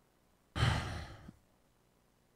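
A man sighs: one breathy exhale, a little under a second long, starting about half a second in.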